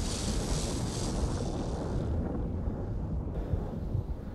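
A steady rushing, rumbling wind sound. Its high hiss fades about two seconds in and drops away about three seconds in, while the low rumble goes on.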